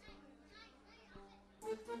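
Faint crowd chatter with children's voices in a room, then live band music starts abruptly near the end.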